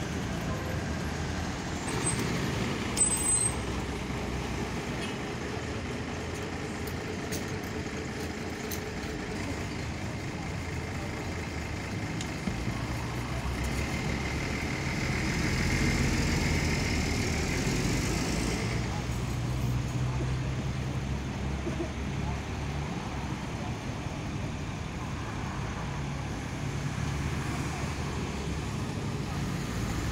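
Street traffic noise with a continuous low rumble of passing vehicles. A truck drives by about halfway through, the loudest moment, with a steady high whine for a few seconds as it passes.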